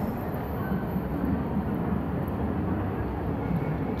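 Steady outdoor city background noise: an even low rumble, with faint voices in the distance for a moment in the middle.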